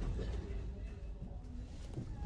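Low rumble of handling noise from a handheld camera being carried while walking, with faint indistinct background sounds.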